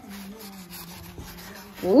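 A faint steady low hum, then near the end a loud "ooh" from a voice, rising in pitch.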